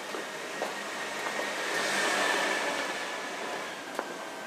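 A vehicle passing close by, its sound swelling to a peak about two seconds in and then fading, over footsteps on the pavement.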